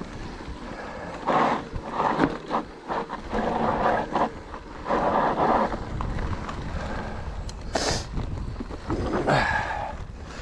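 Riding noise of an e-mountain bike descending a dry dirt singletrack: knobby tyres crunching and rolling over loose dirt and debris, with the bike rattling over the bumps and a steady low rumble. It comes in uneven bursts, with a short, sharp rush of noise about eight seconds in.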